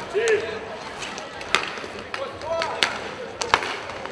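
Inline hockey play: sharp clacks of sticks striking the puck and the sport-court floor, about one a second, over the hum of a large indoor hall.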